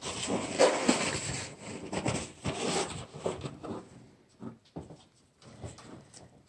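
Rustling and rubbing as paint supplies are handled, dense for about three seconds, then thinning to a few soft taps.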